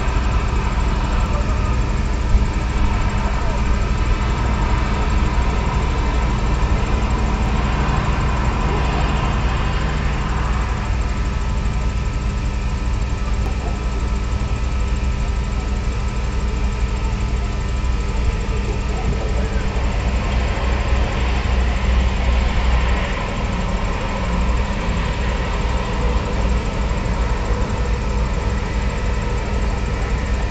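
Ambient drone music: a dense, steady low rumble with several sustained tones held above it, shifting only slowly. The low end thins a little past two thirds of the way through.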